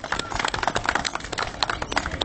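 A small audience applauding, with many separate hand claps heard individually.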